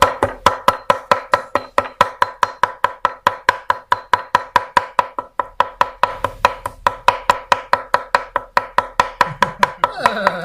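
A heavy cleaver is mincing raw beef for laab on a thick round wooden chopping block. It strikes in a fast, even rhythm of about five chops a second, and each chop carries a short metallic ring from the blade.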